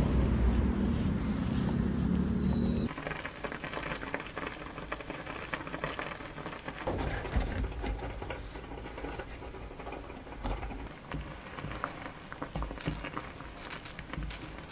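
For about three seconds, a loud low rumble of wind on the microphone outdoors. It cuts off abruptly to kitchen sounds: scattered clicks and clatter of utensils being handled over a crackly patter of water boiling in a pan.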